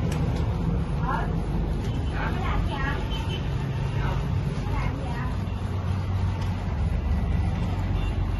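Epson L805 inkjet printer printing, its print-head carriage and paper-feed motors running in a steady low mechanical drone, with faint voices in the background.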